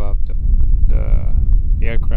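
Wind buffeting the camera microphone with a loud low rumble. About a second in, a man's voice gives a long, drawn-out hesitant 'uhh'.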